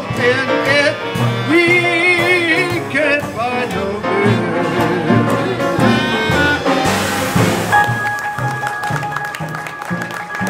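Small traditional jazz band playing live: clarinet and trombone lines over piano, banjo and string bass, with a long held note coming in near the end.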